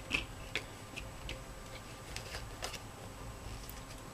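Faint, irregular light clicks and taps of tarot cards being handled.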